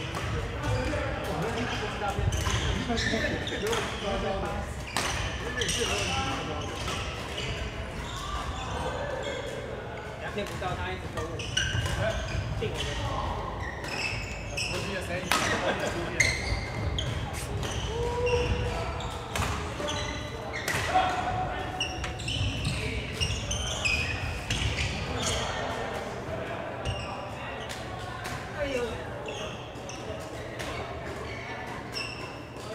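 Badminton rackets hitting a shuttlecock: many short, sharp hits scattered throughout, over the voices of players talking in the background.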